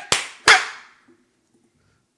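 Two sharp hand claps about a third of a second apart, both in the first half second, each dying away quickly.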